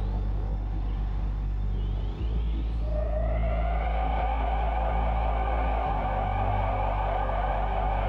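Synthesized electronic drone: a steady deep hum, joined about three seconds in by a shimmering higher synth layer that holds to the end.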